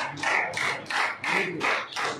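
Hand clapping from the gathering as a man is honoured, coming as a quick run of separate claps about four or five a second, with faint voices underneath.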